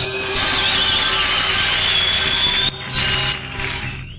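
Live band ending a song: a final loud wash of drums and cymbals with a long, wavering high whistle over it. It drops off about three seconds in and fades out just after.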